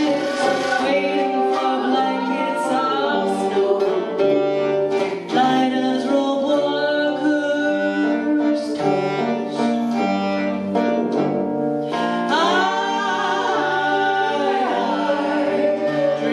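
A live folk band playing, with several voices singing together over harmonium, guitar and tuba; a low bass line holds long notes beneath the voices.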